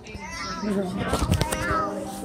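Children's voices talking and playing, the words unclear, with a few sharp clicks about halfway through.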